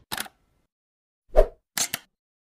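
Logo-animation sound effects: a brief crackle just after the start, a louder short hit about one and a half seconds in, then two quick clicks near the end, with silence between.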